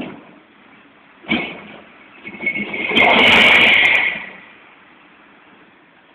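A knock, a sharp clatter about a second in, then a loud crash of waste glass pouring and shattering in a mass for about two seconds before it dies away: a bottle bank being emptied into a glass-collection truck.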